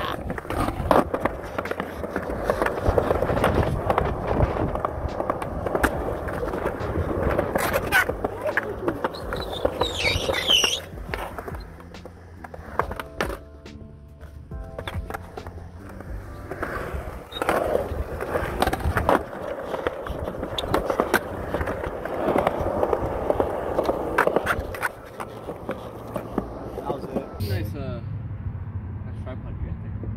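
Skateboard wheels rolling over concrete in a continuous rumble, broken by sharp clacks of the board striking the ground on pops and landings. The rumble eases off for a few seconds in the middle.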